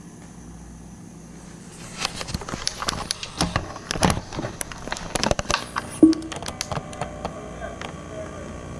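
Handling noise from a handheld camera being moved: a quick, irregular run of clicks, knocks and rustles over a low steady hum, with one short tone about three-quarters of the way in.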